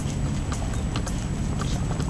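Footsteps on a paved walkway, several sharp steps a second, over a steady low rumble.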